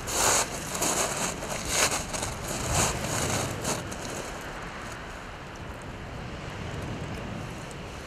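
Crinkling rustles of a plastic cling-film sandwich wrapper being handled, in irregular bursts over the first four seconds or so, then only a steady background hiss.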